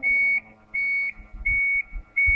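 Forklift reversing alarm giving three even, high-pitched beeps about a third of a second each, as the truck backs away, with a faint low hum of the attachment's motor winding down beneath.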